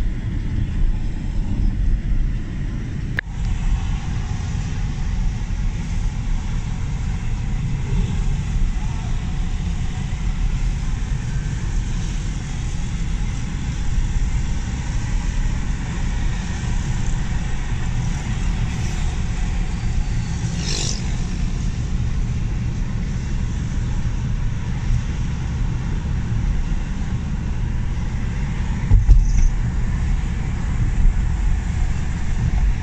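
Steady low rumble of road and engine noise heard from inside a moving car. A brief, higher-pitched sound cuts through about two-thirds of the way in, and there is a short louder knock near the end.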